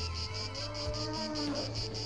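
Crickets chirping in an even rhythm, about five chirps a second, over low sustained tones and a few slow gliding notes.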